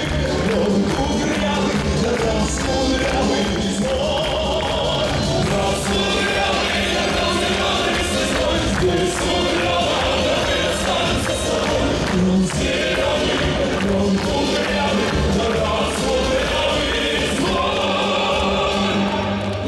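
A live song performance over a stage sound system: a man singing into a microphone over full musical backing with choir-like voices, playing continuously.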